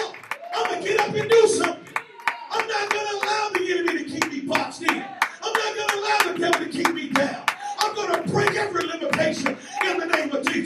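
A man singing into a microphone in long, drawn-out notes, over hands clapping a steady beat throughout.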